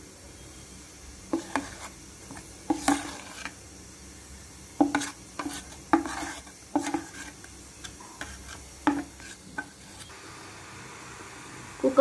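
A spatula scraping and tapping as thick, frothy dhokla batter is pushed out of a bowl into a steel tin, about a dozen scattered scrapes and short metallic clinks, stopping a couple of seconds before the end.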